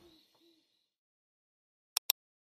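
A faint tail of sound fades out, with two soft, low hoot-like tones in the first half-second. Then silence, broken by a sharp click right at the end.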